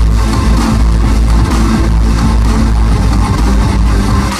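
A band playing an instrumental song live through a club PA, loud, with a heavy steady bass under drums and synths, heard from among the audience.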